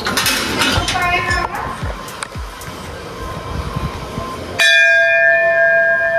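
Brass temple bell struck once about four and a half seconds in, ringing on with a steady tone and several higher overtones.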